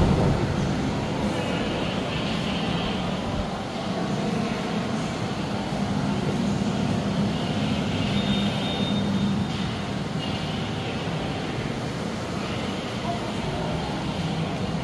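Steady low mechanical drone with a hum, of the ventilation plant in an enclosed station hall.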